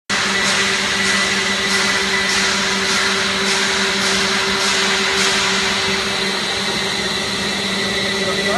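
Cheese-ball puff extruder line running: a steady motor hum with a high whine. Faint regular swishes come about every 0.6 s through the first five seconds.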